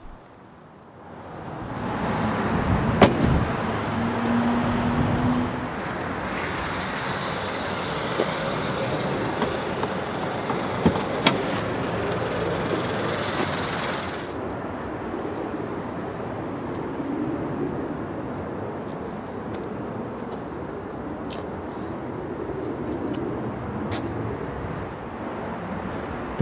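Road traffic going by: a steady rush that swells about two seconds in and eases off about halfway through, with a short low hum early on and a few sharp clicks.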